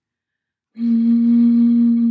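A bottle blown across its mouth, sounding one steady, low note with airy breath noise, beginning about three-quarters of a second in. The lip edge splits the air stream, and the air space inside the bottle sets the pitch.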